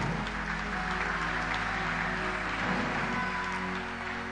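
A congregation applauding over soft background music with sustained tones.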